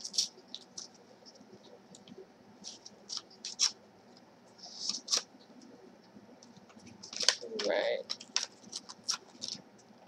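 Paper handling as a card envelope is opened by hand: scattered light crinkles, rustles and small clicks, with a slightly louder rustle about halfway through. A brief soft murmur of a voice comes near the end.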